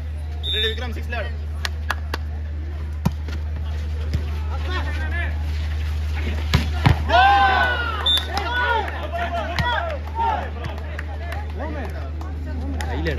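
Volleyball rally: sharp hits of the ball, two close together about six and a half seconds in, followed by loud shouting from players and spectators, over a steady low hum.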